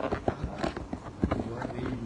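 A man's voice speaking, with frequent sharp clicks scattered through it.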